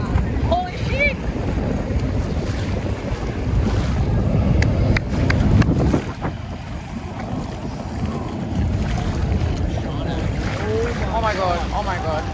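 Wind buffeting the microphone over choppy ocean water, a steady low rumble, with a few brief shouted voices just after the start and again near the end.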